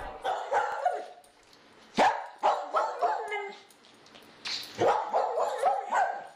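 A dog barking and yipping in short, separate bursts with pauses between them.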